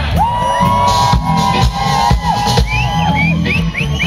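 Live funk band playing: a steady rhythm section under one long held note that slides up into pitch at the start and holds for about two and a half seconds, with a few quick upward slides near the end.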